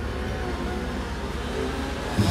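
Diesel engines of heavy work vehicles running with a steady low rumble.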